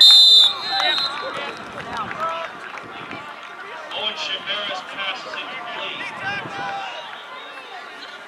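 A referee's whistle blows once, briefly and high-pitched, right at the start, the loudest sound, signalling the play dead. Many voices shout and talk across the field and stands throughout.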